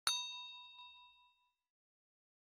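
A single bell-like ding sound effect: one sharp strike that rings out in several clear tones and fades away over about a second and a half, the chime played for tapping the notification bell.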